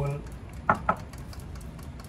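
Steritest Symbio peristaltic pump running with a low steady hum. A little under a second in come two sharp knocks close together as the equipment is handled.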